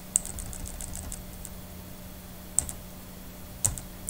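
Light clicks of a computer keyboard: a quick scatter of taps in the first second and a half, then two single, louder clicks near the end, over a faint steady low hum.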